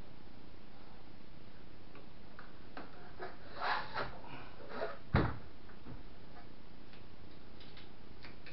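Scattered clicks and knocks from hands handling an Anet ET4+ 3D printer's frame, with one sharp thump a little past halfway, over a steady background hiss.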